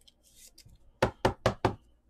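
Trading cards tapped against a tabletop: four quick, sharp knocks about a fifth of a second apart, after a faint rustle.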